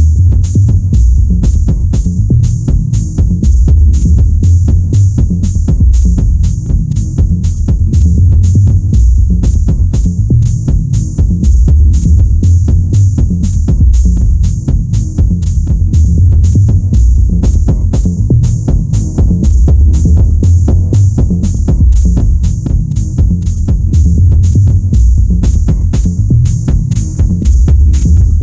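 Deep tech house music: a heavy bass line and kick drum under a steady, fast hi-hat rhythm, played on without a break.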